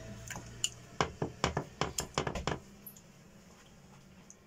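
Kitchen tongs clicking and clinking against a plastic bowl and a glass baking dish while pieces of marinated chicken breast are lifted and laid in: a quick run of about a dozen sharp clicks, which stops about two and a half seconds in.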